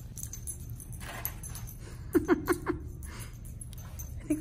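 Light jingling of a small dog's collar tags as it trots over carpet while searching, with a short burst of a person's laughter, four quick pulses, a little past two seconds in.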